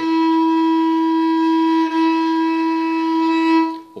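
Bulgarian gadulka bowed in one even, full sustained note, using the whole bow from frog to tip and back. There is a single brief bow change just before the middle.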